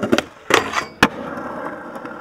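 Skateboard wheels rolling on hard ground. In the first second there are several sharp clacks of the board, the loudest just after half a second and a crisp one at about a second. Then the rolling carries on steadily.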